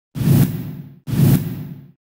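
Two whoosh sound effects from a TV news channel's logo intro, one right after the other. Each swells in suddenly and fades away over about a second.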